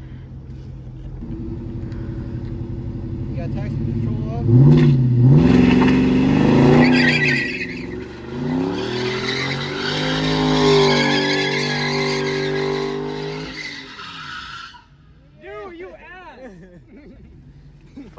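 Dodge Charger Scat Pack's V8 revving hard while spinning its rear tyres through a donut, the engine pitch rising and falling with tyre squeal over it. The engine builds from about a second in, is loudest from about four and a half seconds, and drops away about fourteen seconds in.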